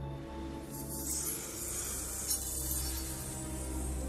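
Film score with sustained low notes. About a second in, a high shimmering magic sound effect joins it as a green spell circle forms.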